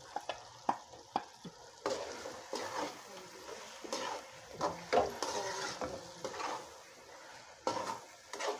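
Steel spoon stirring spiced potato cubes in hot oil in a metal kadai, with the oil sizzling. A few light clicks in the first two seconds, then irregular scraping strokes against the pan.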